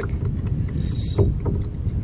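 Wind buffeting the microphone on a kayak. Two short, high hissing whirs come about a second in and again just after the end, with a light knock between them.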